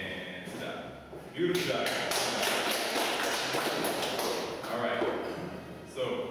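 Dance shoes tapping and shuffling on a hardwood floor as salsa steps are danced, a quick run of sharp taps that starts about a second and a half in and fades out near the end.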